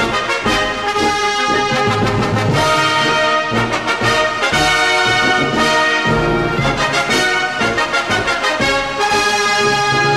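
Military brass band playing an instrumental march, with trombones and trumpets carrying the tune over a steady beat.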